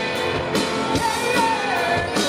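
A rock band playing live, with a high male lead voice singing over guitar and drums; in the second half the sung note slides downward.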